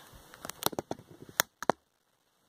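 Handling noise from the camera being grabbed and tilted down: a quick run of sharp clicks and knocks, after which the sound cuts out abruptly.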